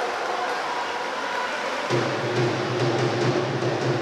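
Indoor pool-hall match ambience of splashing and crowd noise. About two seconds in, a steady low droning tone starts and holds.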